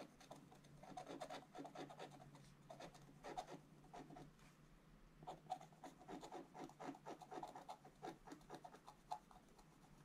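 Wooden scratch stylus scraping the black coating of a scratch-art page in rapid short strokes, faint, in runs with a brief pause near the middle.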